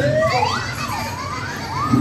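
Whistling sound effects from the dark ride's show audio: several pitch glides swooping up and down and crossing one another, over a steady low hum.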